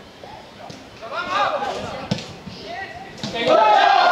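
Shouting voices of players and spectators at an outdoor football match, with a single thud about two seconds in. Near the end the voices swell suddenly into loud crowd shouting as play reaches the goalmouth.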